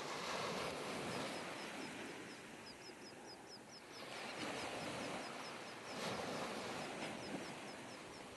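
Outdoor ambience: a steady rushing noise with a small bird chirping in quick runs of short, repeated high notes, twice over.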